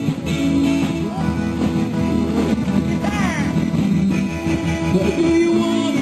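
Live rock and roll band music, with singing over guitar.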